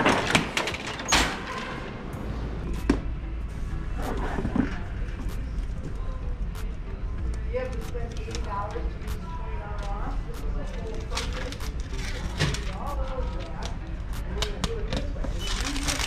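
Metal shopping cart pulled free from a nested row, clicks and clatter in the first second or two, followed by a steady low hum with scattered clicks and knocks and faint voices.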